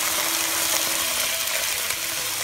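Steady sizzling from a hot wok of carrots, scallions and garlic cooking in oil.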